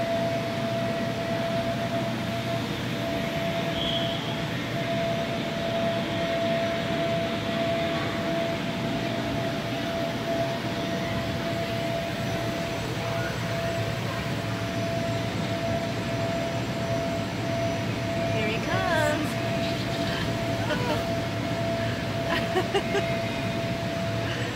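Steady drone of electric air blowers keeping inflatables up, with a low hum and a constant thin whine throughout, under the distant voices of children at an indoor inflatable play centre. A few high, wavering children's calls come near the end.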